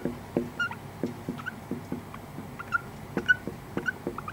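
Marker pen squeaking and tapping on a whiteboard as words are written: a faint run of short squeaks and ticks, about three a second, one for each pen stroke.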